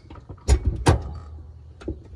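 Shift linkage of an automatic transmission clunking as the newly installed floor shifter is moved through its gear positions: two sharp clunks about half a second and a second in, then a lighter click near the end.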